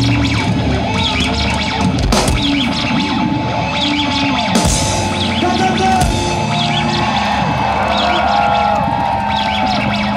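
Rock band playing live through a large festival PA, heard from within the crowd: drums and distorted electric guitar, with sliding guitar tones in the second half.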